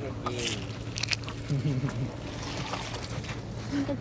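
A wet gill net is being hauled over the side of a small wooden boat, with water dripping and sloshing off it, under people's voices. A steady low hum runs underneath.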